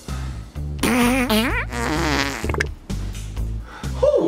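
Two comic fart sounds over background music: a loud one about a second in whose pitch bends and rises, then a shorter wavering one.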